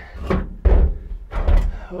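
Large DeWalt cordless impact wrench being handled and set down on a pickup's steel cab floor: two heavy thuds less than a second apart, with sharp clattering around them.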